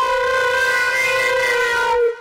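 Electronic wind instrument sounding one long held synth note, steady, sagging slightly in pitch near the end.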